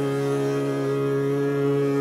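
Hindustani classical music in raga Shudh Kalyan at slow vilambit tempo: one long note held steady over the tanpura drone.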